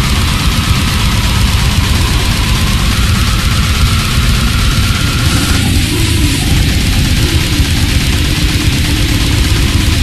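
Goregrind music: a loud, dense wall of heavily distorted guitars and bass over rapid drumming, with no break.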